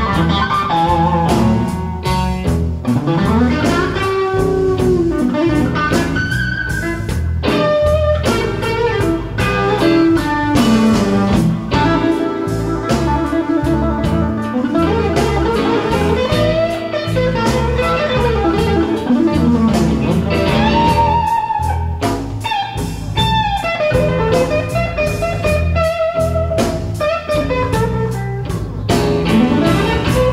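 Live blues band: an electric guitar playing a lead solo full of bent notes, over a drum kit keeping a steady beat.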